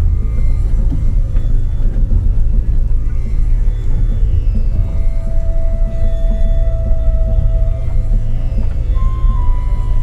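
Eerie background music with long held notes, one beginning about halfway through and a higher one near the end, over a steady low rumble from the car cabin as the car drives along a rough dirt track.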